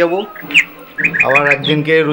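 A bird chirping in short, quickly falling notes, a few times over, mixed with a person's voice.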